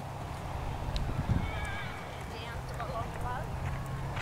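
Hooves of a horse trotting on a grass arena, heard as soft thuds, with distant voices in the background.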